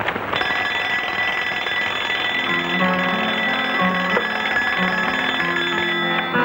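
Alarm clock ringing steadily from about half a second in until it stops near the end. Film background music with low plucked notes comes in about halfway through.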